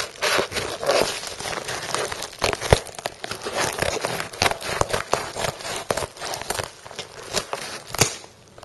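White plastic mailing bag crinkling and crackling as it is handled and worked open, a dense run of irregular sharp crackles.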